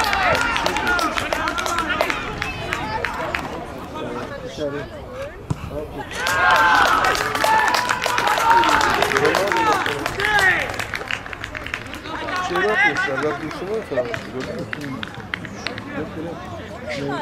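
Footballers and a few spectators shouting and cheering over one another after a goal, loudest in the middle, with a few scattered claps.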